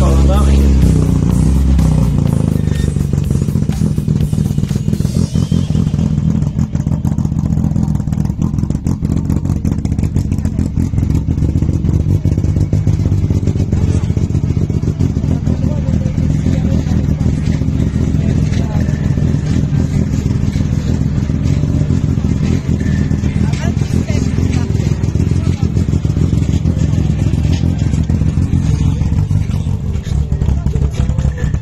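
Peugeot rally car's engine running steadily at idle, a constant low rumble with no revving. Music fades out in the first two seconds.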